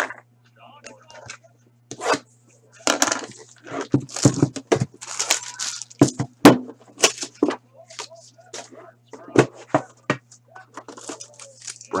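Plastic and cardboard trading-card packaging being handled and opened: crinkling and rustling with sharp clicks and knocks, over a steady low electrical hum.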